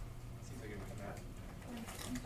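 Faint, low murmured voice sounds in short fragments over a steady low hum.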